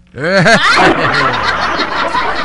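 Laughter after a joke. One voice laughs in a few short bursts, then a dense, full mass of laughter takes over and keeps going.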